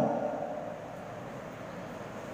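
Steady low hum and hiss of church room tone, after the echo of a man's voice dies away in the first half second.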